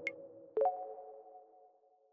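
Logo sting: a short click, then about half a second in a soft synthesized chime of a few notes rings out and slowly fades away.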